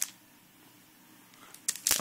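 A sharp click, then quiet room tone, then a few quick clicks and a rustle of handling near the end.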